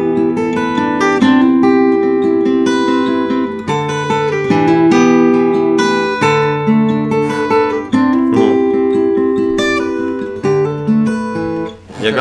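Acoustic guitar played fingerstyle: a melody of separately plucked, ringing notes over lower bass notes, without singing.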